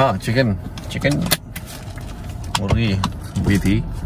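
Snatches of speech inside a car, with a cluster of sharp clicks about a second in.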